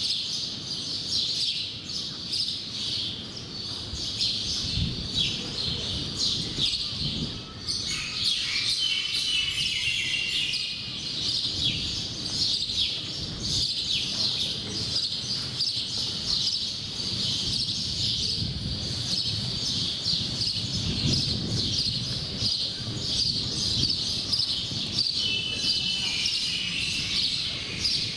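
Birds chirping and twittering continuously, with a lower trilling call about eight seconds in and again near the end, over a low rumble.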